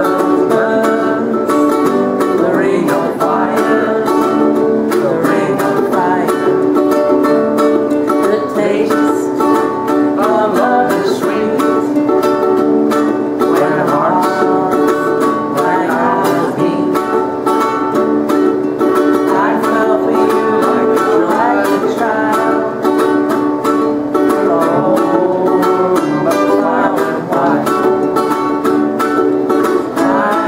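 Acoustic guitar and ukuleles strummed together in a steady rhythm, with voices singing along to an old-time song.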